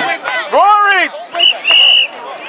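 A referee's whistle at a youth soccer match: a short blast and then a longer one near the end. Just before, a spectator shouts a drawn-out "push" that rises and falls in pitch.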